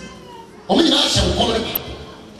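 A person's voice giving a short wordless cry, drawn out for just under a second, starting about two-thirds of a second in.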